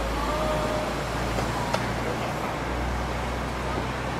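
City road traffic: a steady low rumble of passing cars and buses, with a single sharp click a little under two seconds in.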